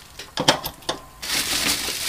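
An 18650 lithium cell being pushed into a plastic cell-holder block: a few sharp clicks and knocks, then a longer scraping as the cell slides down into its slot.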